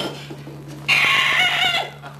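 A man imitating a chicken with his voice: one high, wavering chicken call lasting just under a second, starting about a second in.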